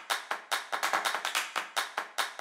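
Rapid sharp clap-like hits, about six a second, from the percussive sound track of an animated logo intro.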